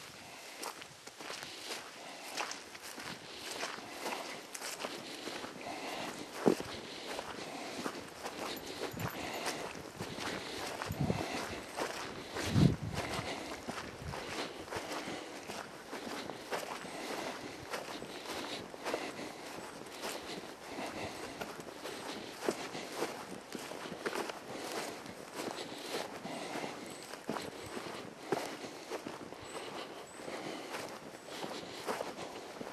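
Footsteps of a person walking on forest ground, a continuous scatter of small crackles and ticks, with a dull low thump about twelve seconds in.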